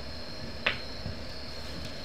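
Steady room tone with a faint high-pitched tone running under it, and a single sharp click about two-thirds of a second in.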